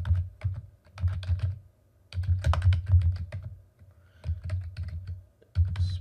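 Computer keyboard being typed on in several quick bursts of keystrokes with short pauses between them.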